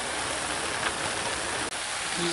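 Shredded cabbage and meat sizzling in oil in a roasting pan, a steady even hiss.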